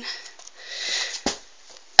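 A breath sniffed in through the nose, swelling and fading, then a single light knock from the cardboard doll box being handled as it is turned over.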